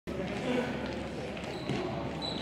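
Players' voices calling out across a large, echoing sports hall, with a few faint footfalls and thuds from running on the court floor.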